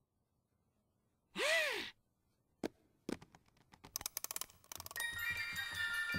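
A short voiced sigh from a cartoon mouse, then a run of clicks that come faster and faster as a music box's wind-up key is turned. About five seconds in, the music box starts playing its tinkling tune.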